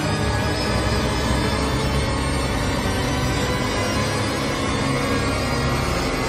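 Instrumental hip-hop music from the opening of a track: sustained tones over a steady low bass, with no vocals.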